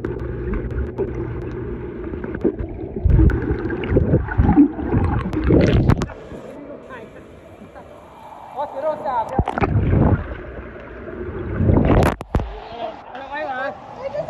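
Water sloshing and splashing close to the microphone, with heavy surges about three seconds in, near ten seconds and near twelve seconds, along with indistinct voices.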